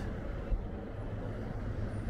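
Town-street ambience: a steady low rumble of road traffic, with a soft thump about half a second in.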